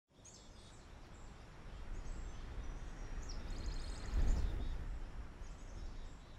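Outdoor ambience: birds chirping over a low rumbling noise that swells to its loudest about four seconds in.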